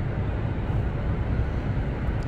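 Steady low rumble of city background noise, with no distinct events.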